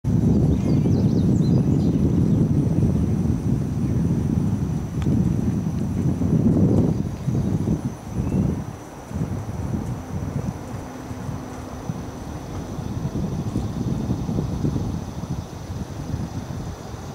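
Horse trotting on the soft footing of a covered dressage arena, its hoofbeats dull and muffled, with a loud low rumble through roughly the first seven seconds.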